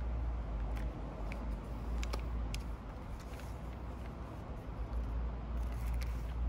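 A few faint clicks and crinkles from a small plastic parts bag being handled and cut open with a folding pocket knife, over a steady low rumble.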